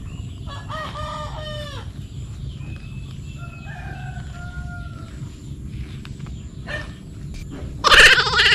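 A rooster crows once, starting about half a second in and dropping in pitch at the end. Fainter crowing follows a second or so later, over a steady low rumble.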